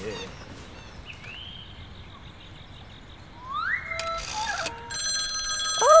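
A telephone starts ringing about five seconds in, a steady high ring. Before it, after a quiet stretch, a short rising slide is heard about three and a half seconds in.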